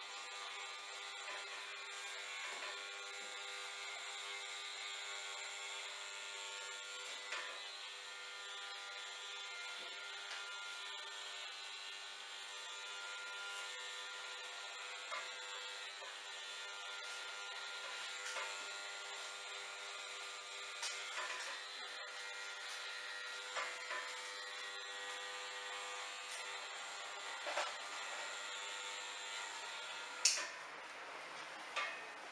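Electric hair trimmer running steadily at the nape with a constant buzz, with a few light clicks scattered through.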